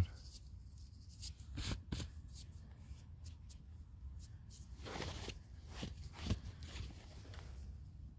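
Fingers brushing and rubbing sand off a stone arrowhead held in the palm: soft, scattered gritty scratches and rustles, with a longer rustle about five seconds in.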